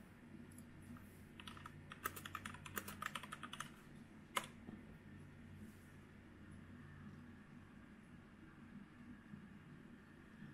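Computer keyboard typing, a quick run of key clicks lasting about two seconds, then one louder key press, over a faint low hum.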